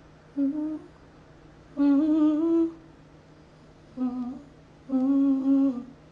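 A woman humming a short tune: four notes, the first and third short, the second and last held for about a second.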